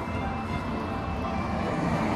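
Road traffic on a main road: a steady rush of car tyres and engines going by, swelling slightly toward the end.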